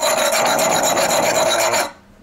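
Carburetor adapter plate rubbed on a sandstone sharpening stone: a loud, continuous gritty scraping that stops shortly before the end. The plate's face is being lapped flat because it is not flat and would not seal evenly against the cylinder.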